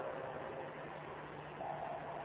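Low, steady background hiss of the recording with a faint hum, in a pause in the speech.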